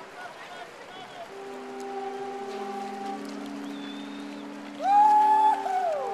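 Long held notes blown on conch shells (pū), several overlapping across the water. A loud one near the end swoops up into its note, holds about a second and falls away as another begins.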